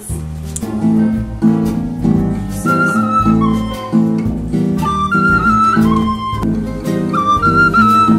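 Acoustic guitar strummed in a steady rhythm of chords, joined about three seconds in by a wooden end-blown flute playing a melody over it.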